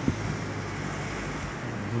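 Steady running noise of a car heard from inside the cabin while it drives slowly: an even hiss over a low, steady engine hum.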